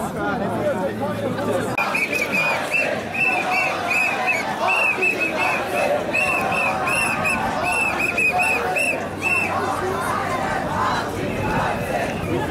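A marching crowd of demonstrators, with many voices talking and shouting at once. From about two seconds in until about nine seconds, a high-pitched tone repeats a couple of times a second above the crowd.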